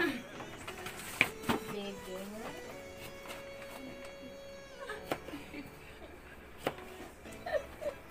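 Chef's knife cutting a small citrus fruit on a plastic cutting board: a few sharp knocks about a second in and again near five and seven seconds. Behind them are a voice-like wavering sound and a held tone.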